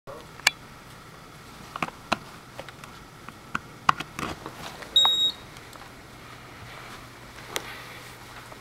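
Mains plug and power cables clicking and rattling as the plug is pushed into a power strip, followed about five seconds in by a single short, high electronic beep as the power distribution unit powers up, then a faint steady low hum.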